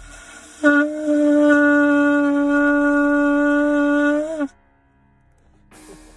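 Shofar blown in one steady held note of about four seconds, starting with a short blip and lifting slightly in pitch just before it cuts off. The hiss of breath through the horn starts a moment before the note sounds and runs under it.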